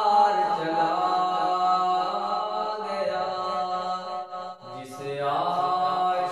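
A man's solo voice singing an Urdu devotional kalaam in long, drawn-out melismatic notes. About four and a half seconds in, the line dips lower and softer, then climbs back up.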